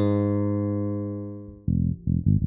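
Music Man StingRay electric bass through a Mark Bass Little Marcus head with the Millerizer filter at maximum: one note held and ringing out, its bright top fading away. Near the end, playing starts again with a dark, treble-cut tone, the Old School low-pass filter turned to maximum.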